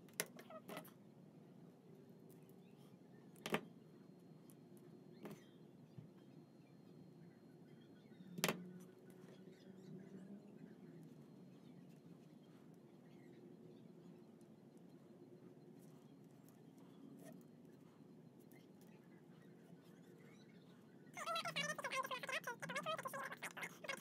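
Handling of a wire stripper and thin insulated wires: a few sharp clicks of the tool in the first nine seconds, then only faint rustling over a quiet background.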